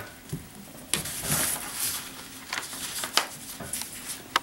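Sheets of white paper rustling and sliding against each other on a table as they are handled, with a glue stick rubbed across the paper and a few light clicks.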